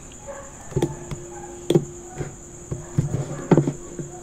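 Computer mouse clicking, about seven short sharp clicks at an irregular pace, over a steady high-pitched electrical whine.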